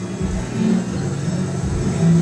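Acoustic guitar playing an instrumental passage between sung lines, with low bass notes struck near the start and again about a second and a half later.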